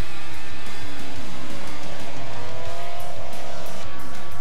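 Two-stroke 250 cc Grand Prix racing motorcycles at full throttle through a corner, the engine note rising as they accelerate out of it, with background music underneath.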